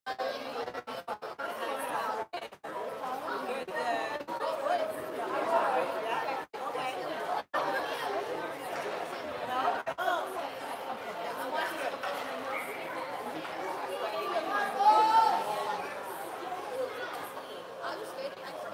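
Several people chatting at once in the stands of an indoor ice rink, their voices overlapping. The audio cuts out for an instant a few times in the first half.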